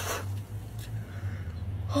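A short spray of soda spat out of a mouth, followed by a low steady background hum.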